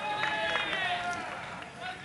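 A high-pitched voice calling out from the stands in one long drawn-out shout. A second, shorter call comes near the end.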